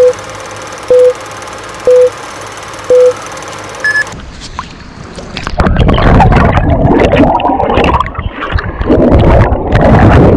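Film-countdown sound effect: four short beeps a second apart and then one higher beep about four seconds in, over a steady hiss. From about five and a half seconds it changes to loud underwater rumbling and bubbling from a camera submerged in the surf.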